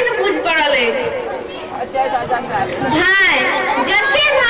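Speech only: people talking, with background chatter.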